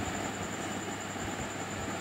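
Steady background hiss with a faint, constant high-pitched whine and a low hum underneath.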